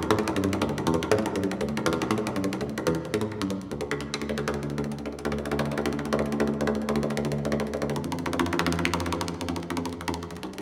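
Solo percussion on home-made instruments of recycled plastic pipes and metal cans, struck in a fast, busy rhythm. The strokes give hollow, pitched notes that shift from one pitch to another.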